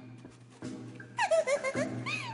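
Squeaky, chirping calls: a quick run of several rising-and-falling squeaks about a second in, over a steady low hum.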